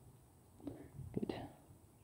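Mostly quiet, with faint rustling and light clicks of hands squeezing a soil-filled fabric grow pot, and one softly spoken word about a second in.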